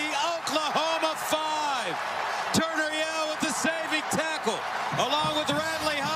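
A man's excited voice calling out in long, arching shouts over a cheering stadium crowd.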